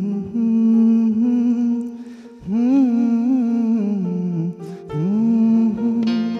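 A man singing solo in long held notes without words, with quick wavering turns in the middle of phrases and short breaks between them.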